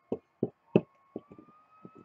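A plastic toy figurine tapped and shuffled across the set by hand, giving about seven soft, irregular knocks, under a faint steady whine that rises slightly in pitch about halfway through.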